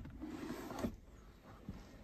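Centre console armrest lid of a Cadillac CT5 being unlatched and lifted open by hand: a soft scraping rustle lasting about a second, ending in a small click.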